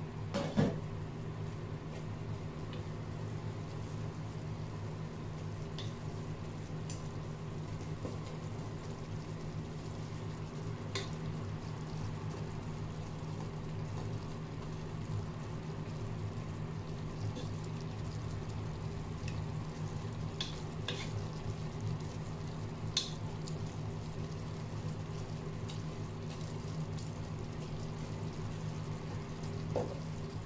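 A pot of taro leaves in coconut milk simmering steadily, bubbling over a constant low hum. A wooden spatula stirs the leaves, with a few light clicks.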